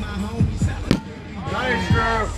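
A single sharp smack of a rubber kickball about halfway through, as the ball is fielded, followed by shouting voices near the end, with music in the background.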